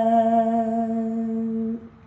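A man's voice chanting a Persian prayer unaccompanied, holding one long steady note that stops shortly before the end.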